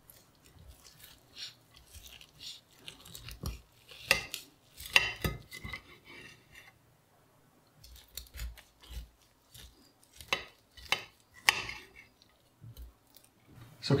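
Chef's knife carving a roast leg of lamb on a ceramic plate: irregular cutting strokes, with the knife and carving fork clicking and scraping against the plate, and a short pause in the middle.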